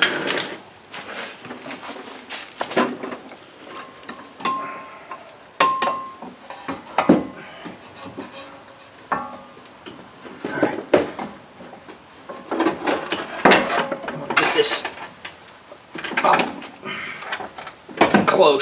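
Irregular metallic clanks, knocks and scrapes of a new front strut and coil-spring assembly being worked up into the wheel well against the knuckle and suspension parts, with two short squeaks about five seconds in.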